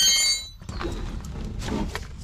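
A metallic clank with a high ringing that dies away in about half a second, from a steel wrench on a rusty tie rod end castle nut as it is cracked loose. Then come a few faint knocks and the sound of tools being handled.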